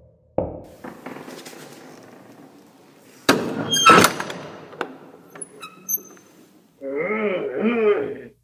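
Door sound effects: a knock with a lingering tail, then about three seconds in a loud clatter with a high squeak as a door is opened, followed by a few light clicks. A voice speaks near the end.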